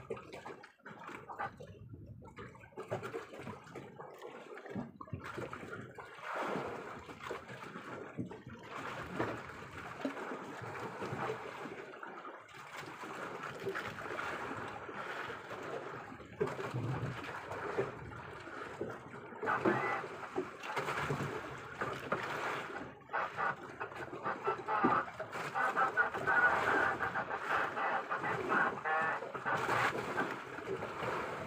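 Sea water sloshing and splashing against the side of a small fishing boat, an irregular wash that grows louder in the last few seconds.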